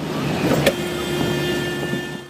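Car cabin noise from a dashcam while driving: a steady road and engine rumble, with a sharp click about two-thirds of a second in, after which a faint steady hum joins.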